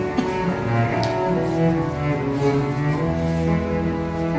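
Background music of slow, held low notes that change pitch every second or so.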